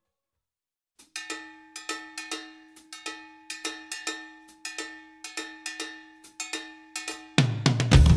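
About a second of silence, then a solo rhythm of struck metallic hits like a cowbell, several a second over a ringing tone, opening a rock track. Near the end a full rock band comes in loud, heavy in the bass.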